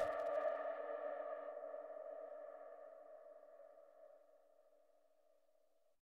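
The end of an electronic dance music mix: the beat cuts off, and a held electronic chord of several steady tones rings on, fading out over about four and a half seconds.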